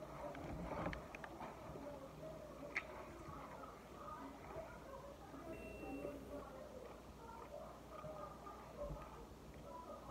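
Faint chewing and small mouth clicks of someone eating french fries, with a few soft ticks over quiet room tone.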